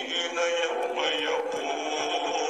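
A man's voice chanting Arabic supplications in a slow, melodic recitation, with long held and gliding notes.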